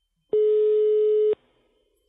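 Telephone ringback tone: a single steady one-second beep heard on the caller's line while the called phone rings, before anyone answers.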